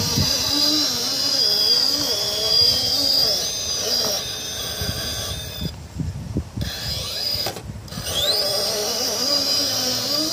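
Brushless motor and gear drivetrain of an RC rock crawler whining as it crawls over boulders, its pitch rising and falling with the throttle, with scattered knocks of tyres and chassis on rock. The whine cuts out briefly twice, about six and about seven and a half seconds in, then rises again as the motor spins back up.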